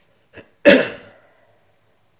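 One short, loud cough-like burst from a man's throat that dies away within about half a second. It comes just after a faint click.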